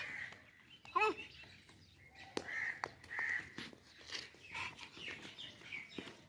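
Crows cawing, a few short calls spread through the scene, with a child's brief shout about a second in.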